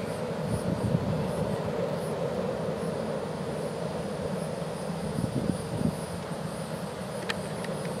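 Florida East Coast Railway intermodal freight train rolling past and away: a steady rumble of its cars' wheels on the rails that eases slightly toward the end.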